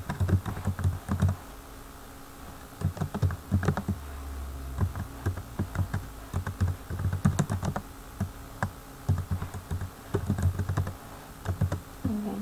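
Typing on a computer keyboard: runs of keystrokes in short bursts with brief pauses between words.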